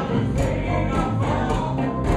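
A live blues and rock'n'roll band with a horn section, electric guitar and drums playing together at full volume, with a steady beat of about two hits a second.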